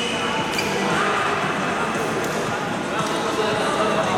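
Badminton play in a large reverberant sports hall: a few sharp racket strikes on the shuttlecock and footsteps on the court floor, over a steady background of voices.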